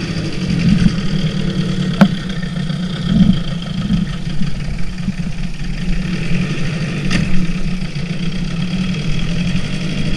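Evinrude 4.5 hp two-stroke outboard motor running steadily as it pushes the boat along. There is a sharp knock about two seconds in and another about seven seconds in.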